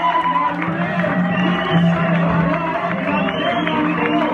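Live church worship music with a held low note, and over it the voices of a congregation and a man on a microphone calling out in praise.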